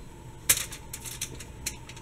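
A sharp click about half a second in, then a run of lighter, irregular clicks and taps as dough rolls are set on a baking tray.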